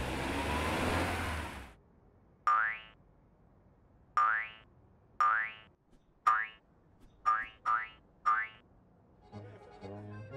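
Cartoon boing sound effects, seven short springy sounds each rising quickly in pitch, as animated balls hop out one after another, the last three close together. They follow a loud burst of hiss-like noise at the start that lasts under two seconds, and music comes in near the end.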